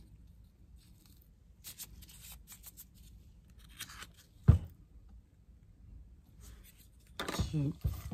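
Soft rustling and small clicks of hands handling a paper gift tag and thin ribbon, with one sharp knock about halfway through. A person starts speaking near the end.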